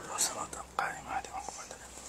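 A man whispering under his breath into a microphone, with soft breathy syllables and a sharp hissing 's' about a quarter second in.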